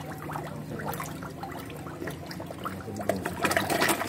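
A crowd of carp and koi splashing and gulping at the water surface as they feed, with many small wet pops and splashes that grow louder near the end.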